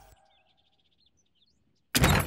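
Faint birds chirping over near silence, then a sudden loud impact near the end.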